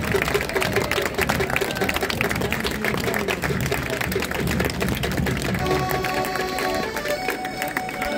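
A crowd clapping and applauding, with voices among it. About three quarters of the way through, a piano accordion starts playing steady held chords.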